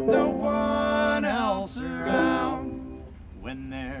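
A man singing a song in long held notes over guitar accompaniment, in two loud phrases with a quieter dip near the end.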